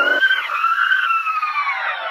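A whining trailer sound effect with many overtones, like a tape winding: it peaks in pitch just after the start, then slides slowly and steadily down.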